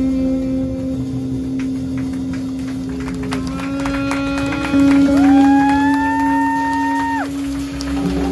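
Live free-improvised jazz from a small group of saxophone, electric guitar, upright bass and drums: a low note is held throughout under light cymbal taps, and about five seconds in a saxophone note slides up, holds for about two seconds and falls away.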